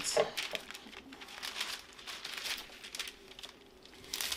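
Thin clear plastic cover film on a diamond painting canvas crinkling as hands lift it and press it flat, smoothing out a crease and air pockets under the film. The crinkling is irregular and dies down near the end.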